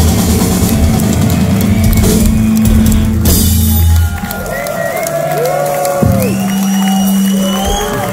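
Punk rock band playing live with distorted guitars, bass and drums, loud and full, which stops about four seconds in at the end of the song. Sustained ringing guitar tones and crowd shouts follow.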